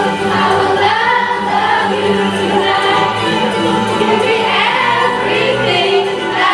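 A group of young voices singing together over amplified music, with microphones on stage.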